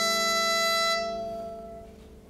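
Violin with electric keyboard accompaniment holding a long final note of a phrase, which ends about a second in and dies away into a short pause.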